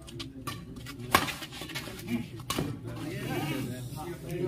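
A few sharp racket hits on a shuttlecock during a badminton rally, the loudest just over a second in and another about two and a half seconds in, over a murmur of voices.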